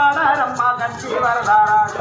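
A woman singing a devotional folk song through a microphone and loudspeakers, her voice wavering and gliding in pitch, over a steady fast rattling percussion beat.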